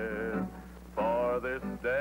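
A man singing a slow Western ballad with instrumental accompaniment. A long held note ends about half a second in, and after a short quieter gap the next sung line begins about a second in.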